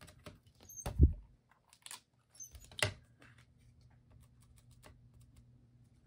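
Light clicks and taps of a VersaMark ink pad and stamping tools being handled, with one heavier thump about a second in and a sharp knock near three seconds.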